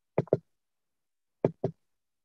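Two quick double knocks, one pair just after the start and another about a second and a quarter later, heard over a video call.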